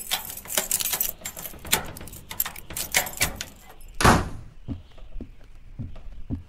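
Radio-drama foley: irregular knocks and clicks of footsteps and a key, then one louder door thud about four seconds in.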